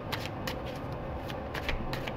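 A deck of tarot cards being shuffled by hand, the cards giving a scattering of light, irregular clicks.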